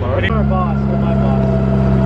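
Amphicar's rear-mounted four-cylinder engine running steadily while the car cruises as a boat; its note steps up slightly just after the start.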